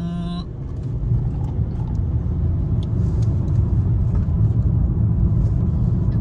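Road and engine noise inside a moving small Chevrolet car: a steady low rumble that grows louder over the first second or so, then holds.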